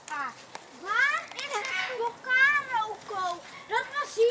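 Eclectus parrot chattering in a string of short, high-pitched, voice-like calls that rise and fall in pitch.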